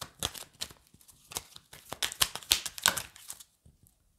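A deck of tarot cards shuffled by hand: a quick run of soft card clicks and flutters that stops about three and a half seconds in.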